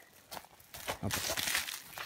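Crinkling of a piece of found litter as it is handled, with some crunching footsteps on wood-chip mulch.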